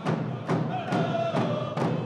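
Lil'wat music: a drum beaten steadily about twice a second, with a voice singing a long held note from about a second in.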